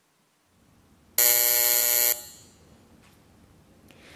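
Plenary voting buzzer sounding once, a loud steady electronic tone lasting about a second and fading out, signalling that the vote is open.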